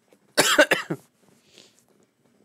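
A man coughing: one short bout of coughing about half a second in, then only faint sounds.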